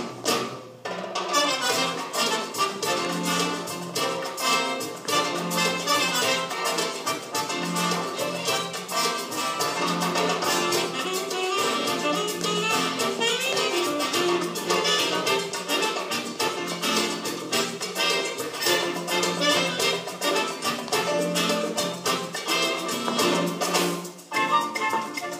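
Recorded show-tune dance music played from a CD, upbeat with brass and a Latin feel and a steady beat.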